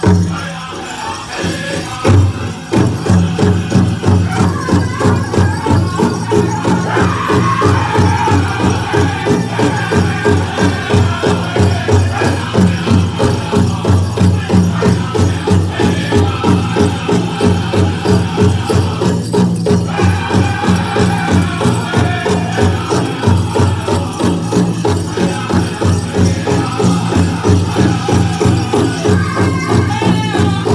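Powwow drum group playing a fast, steady beat of about two to three strokes a second, with singers chanting high over the drum, after a brief lull near the start.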